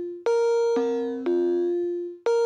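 Sonic Pi's default beep synth playing a looped three-note sequence from code (MIDI notes 60, 65 and 70): a B-flat, then middle C, then F, starting about half a second apart, each note a plain electronic tone that fades as it sounds.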